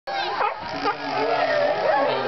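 Sea lions barking while being hand-fed fish, with onlookers' voices alongside.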